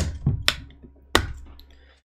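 Several sharp knocks and clacks from objects being handled close to the microphone, about half a second apart and then once more a little over a second in, each dying away quickly, over a low electrical hum.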